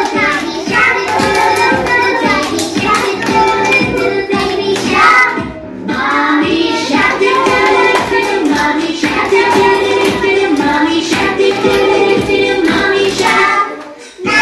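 Young children singing a summer song over a backing track with a steady beat, with a short break in the singing about halfway through.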